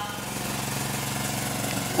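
A steady low mechanical buzzing drone, growing slightly louder toward the end.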